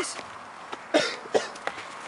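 A young man coughing twice in quick succession about a second in, short and harsh, acting out death by hemlock poisoning.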